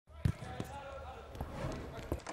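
A football being kicked: one sharp thump about a quarter of a second in, then a few lighter thumps, over background voices.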